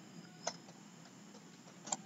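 A couple of faint, short clicks of computer keyboard keys being typed, one about half a second in and another near the end, over low room noise.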